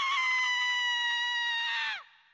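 A single long, high-pitched cry like a shriek, held nearly level and sinking slowly in pitch, then falling away just before the end.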